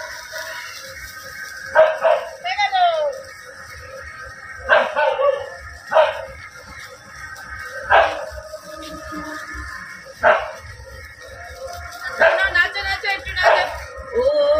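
A dog barking: single sharp barks a second or two apart, then several in quicker succession near the end.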